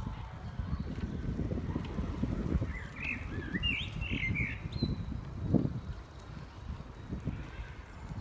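A songbird chirping a short burst of quick notes about three seconds in, over a low, uneven rumble and thumping of footsteps as the recorder walks.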